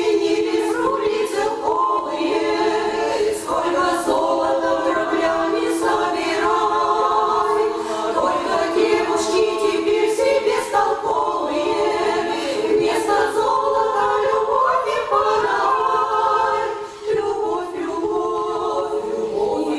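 Women's vocal ensemble singing together in harmony, with a brief break between phrases near the end.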